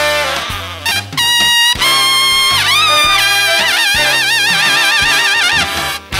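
Jazz big band playing, then a solo trumpet up in its high register: long held high notes, a fall in pitch midway, and a last high note shaken with a wide, fast vibrato.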